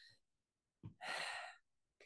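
A woman's audible breath, like a sigh, about a second in and lasting about half a second.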